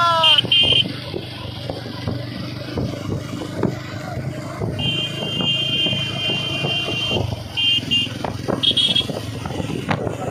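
Motorcycles in a convoy running steadily, with a high-pitched horn sounding in short beeps near the start, one long blast in the middle and a few more beeps near the end.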